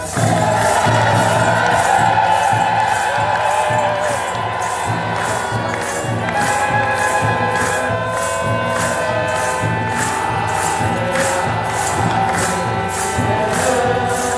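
A large group of Ethiopian Orthodox clergy chanting together in unison. A jingling beat of shaken sistrums runs about twice a second, with steady drum beats underneath.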